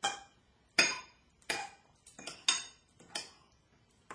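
Table knife slicing soft canned peach pieces in a ceramic bowl, the blade clinking against the bowl's bottom: about six sharp clinks at a fairly even pace.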